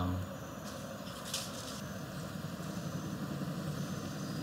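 A steady low mechanical hum, with two brief hissing rustles about a second in.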